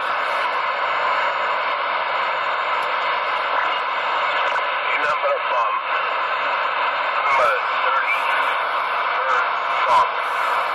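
CB radio receiving with the squelch open: a steady hiss of band noise, with faint, warbling voices of distant stations wavering in and out of the noise about halfway through and again a little later.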